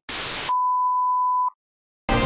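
A brief burst of television static hiss, then a steady test-tone beep held for about a second that cuts off suddenly.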